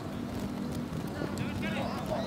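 Football match stadium ambience from the broadcast: a steady low hum with a light haze of crowd and field noise, and faint distant voices calling in the second half.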